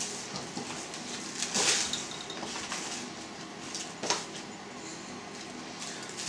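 Hands rubbing a dry salt cure into a raw pork ham in a plastic container: a soft rubbing and rustling, a brief louder scrape near two seconds in, and a short click about four seconds in.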